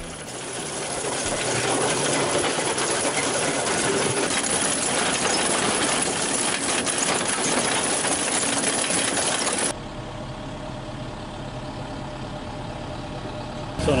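Simex TFC 400 hydraulic drum cutter on an excavator milling a tuff rock wall: a loud, dense grinding noise that builds over the first two seconds and holds steady. About ten seconds in it cuts off suddenly, leaving the quieter steady low hum of the excavator's engine idling.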